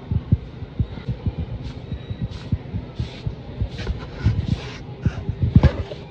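Irregular low thumps and bumps several times a second, with soft rustling: handling noise from a handheld camera carried at a walk.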